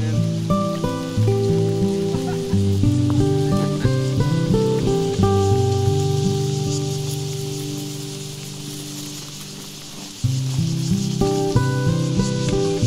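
Background music of plucked acoustic guitar: notes and chords picked in a slow pattern, a chord ringing out and fading for several seconds before playing picks up again about ten seconds in.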